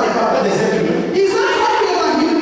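Speech only: a voice talking over a microphone, with the echo of a large hall.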